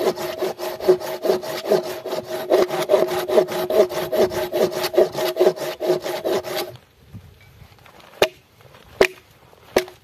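Hand saw cutting through a piece of firewood in quick, even strokes, with a steady ringing tone under the rasp, stopping suddenly about seven seconds in. Three sharp knocks follow near the end, about a second apart.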